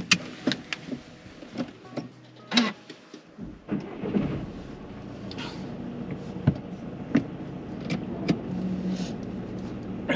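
Car engine starting about three and a half seconds in, then idling steadily, heard from inside the cabin. Several clicks of the car's controls come before it.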